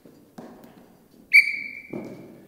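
A soccer ball thumps off a foot on carpet about half a second in, then a coach's whistle gives one short, sharp steady blast that rings on in the hall as it fades: the signal for the player to stop the ball. Another soft thump comes just before the end as the ball is stopped underfoot.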